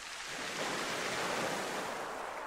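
A wave washing in: a rush of surf noise that swells to a peak about a second in and then slowly fades.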